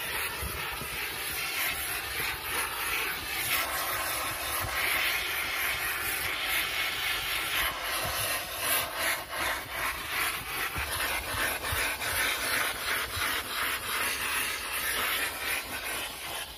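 A carpet-cleaning machine's nozzle on a hose, worked back and forth over dirty car floor carpet: a steady rushing hiss with irregular scrubbing strokes.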